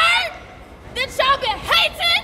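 A woman shouting short calls in a very high, strained voice, a few loud syllables at a time with brief pauses between them.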